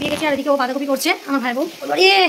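A high-pitched voice singing a melody, its held notes wavering, with a faint hiss underneath.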